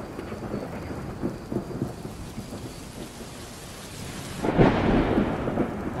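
Steady rain with rumbling thunder. A louder thunder rumble swells up about four and a half seconds in.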